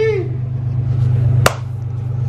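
A single sharp hand slap about one and a half seconds in, as two people clasp hands in a handshake, over a steady low rumble.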